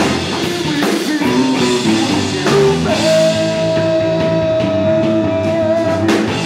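Live band with saxophone, trumpets, electric guitar and drum kit playing an instrumental passage. About halfway through, one long high note is held steady to the end.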